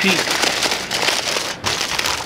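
Aluminium foil crinkling and crackling as hands fold and roll its edges under to seal a foil-wrapped rack of ribs.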